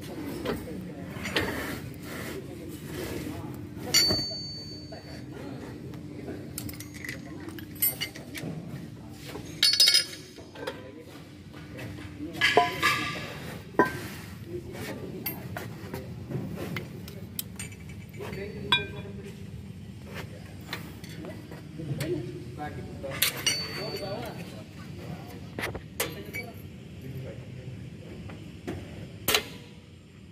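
Metal clinks and clanks of hand tools and steel drum-brake parts being handled during the dismantling of a car's rear drum brake, a string of irregular knocks with a few louder strikes, one ringing briefly about four seconds in.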